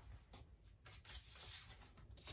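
Near silence, with a few faint, brief rustles and taps of paper being handled on a desk.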